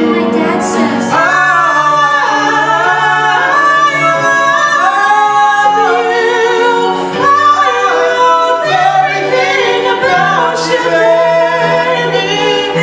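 Three amplified voices, two female and one male, singing a show tune together in harmony through handheld microphones, with long held notes.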